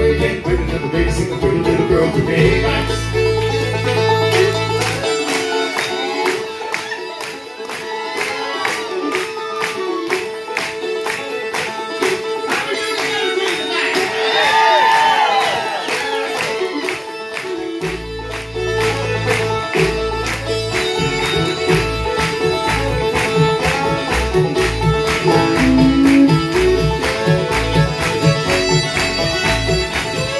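Live bluegrass band playing an instrumental break, with resonator banjo and fiddle to the fore and acoustic guitar behind. The low notes drop out for about twelve seconds mid-way, leaving banjo and fiddle on their own, then come back in.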